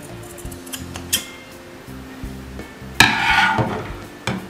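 Steel scissors snipping diagonally through the corner of a light fabric seam allowance: a small click about a second in, then the main cut near three seconds as the blades close through the cloth. Background music plays throughout.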